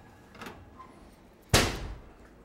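Oven door slammed shut: one loud, sharp bang about one and a half seconds in, with a short ringing tail. A fainter knock comes about half a second in.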